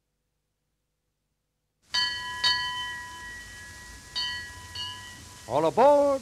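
Silence, then a bell struck in two pairs, ding-ding and again ding-ding, each stroke ringing on and fading, over faint hiss from an old recording. Near the end a man starts calling out.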